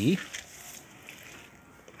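A spoken word trailing off at the very start, then faint steady background noise with a soft click or two.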